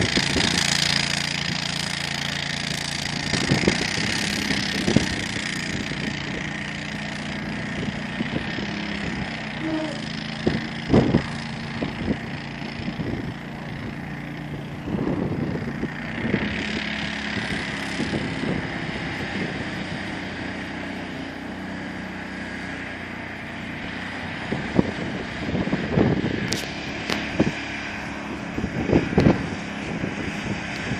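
Engine of a tracked amphibious all-terrain vehicle running steadily as it swims, its tracks churning the water, with several short louder bursts of noise along the way.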